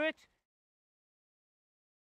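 A man's voice ends a last word right at the start, then the sound cuts to complete silence.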